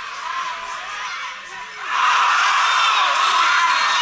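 Football crowd of home supporters: scattered shouts, then an eruption of cheering about two seconds in as a goal goes in.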